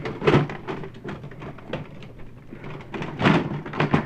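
Plastic Nerf blasters clattering and knocking against each other and a plastic tub while being rummaged through: a string of irregular knocks, loudest just after the start and again about three seconds in.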